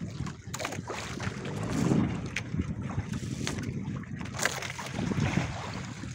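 Wind buffeting the microphone aboard a boat at sea, with sea noise: an uneven low rumble broken by sharp crackles, loudest about two seconds in.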